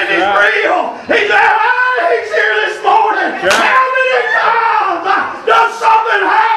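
Loud, impassioned shouting by a preacher, with congregation voices calling out.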